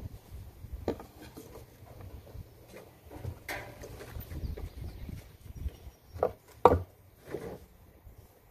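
Handling sounds of a one-inch PVC pipe being set over a tractor axle shaft onto a new axle seal, with a rubber mallet taken up. A few separate light knocks are heard, the loudest about seven seconds in.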